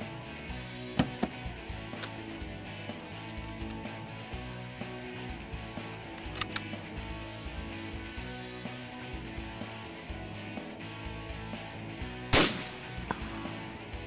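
A single shot from a scoped bolt-action rifle near the end, the loudest sound, over background music that runs throughout. A few sharp clicks come about a second in.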